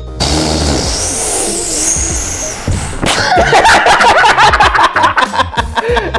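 Background music with a sudden noisy swell over the first three seconds, then loud, hearty laughter from about three seconds in.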